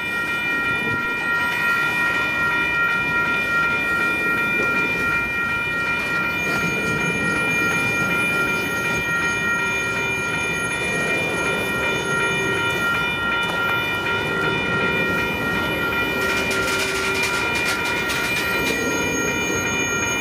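Freight train's covered hopper cars rolling slowly past at close range, slowly getting under way again after a long stop, their steel wheels running on the rails. A steady high-pitched ringing tone lasts throughout.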